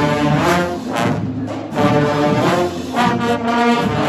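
Marching band brass section—trombones, trumpets and sousaphones—playing a tune in sustained, shifting notes while marching.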